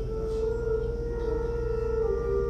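Church pipe organ holding long, steady chords, one note pulsing slightly.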